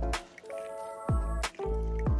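Background music with a steady beat: sustained synth notes over a sharp hit near the start, and a low falling swoop and another hit about a second and a half in.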